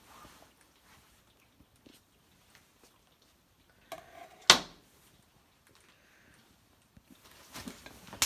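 Faint handling noises, then a single sharp clack about four and a half seconds in: a kitchen knife set down on a plastic cutting board.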